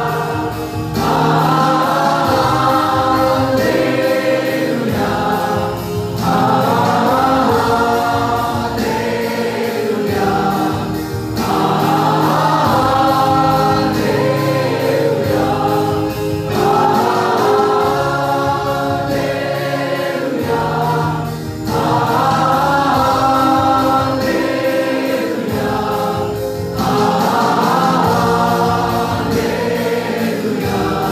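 Mixed choir of men and women singing a Hallelujah hymn through microphones, in phrases of about four to five seconds with short breaks between them.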